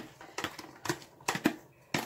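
A metal spoon clicking and tapping against a plastic tub as chopped green onion and herbs are scooped into a pot: several short, sharp knocks spaced irregularly.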